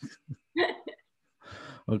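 A short burst of laughter, followed by a quick breath in just before speech resumes at the very end.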